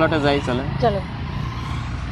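Steady low rumble of a motor vehicle engine in the background, continuing unchanged after a short stretch of speech ends about a second in.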